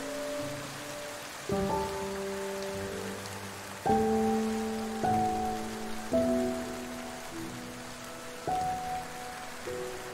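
Soft, slow piano music over steady rain. A new note or chord is struck every one to two seconds and each one fades away.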